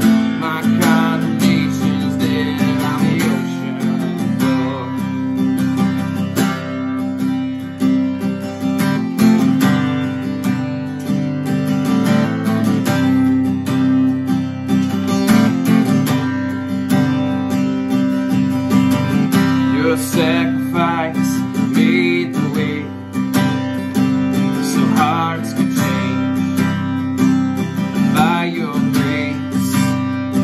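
Ibanez cutaway acoustic guitar strummed steadily, playing a slow repeating chord progression.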